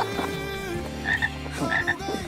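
Cartoon toad croaking sound effect, with short high notes twice.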